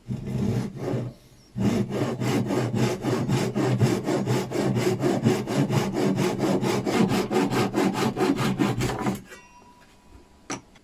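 Hand saw cutting through a small block of walnut: a couple of starting strokes, a short pause, then fast, steady back-and-forth strokes at about four a second that stop suddenly about a second before the end.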